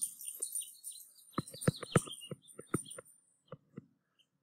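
Irregular light ticks and taps of a stylus on a tablet screen as figures are hand-written, with birds chirping faintly in the background.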